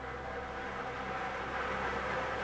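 Lottery drawing machine running with a steady mechanical noise as it keeps mixing the numbered balls in its clear urn between draws.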